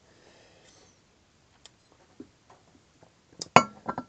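A glass beer bottle set down on the table, striking with a sharp clink and a brief ringing about three and a half seconds in, after a few faint taps.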